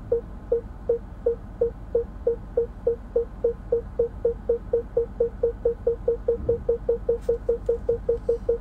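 A car's reverse parking-sensor chime, short beeps at a single pitch that speed up from under three to about four a second as the car backs closer to an obstacle.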